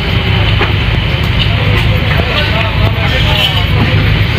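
A steady low drone runs throughout, under faint indistinct voices in the background.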